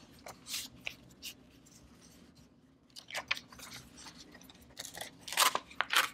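A 90 gsm notebook page being torn out along its perforation: a few short crisp paper crackles, a brief lull, then a denser run of tearing crackles near the end as it makes a clean tear.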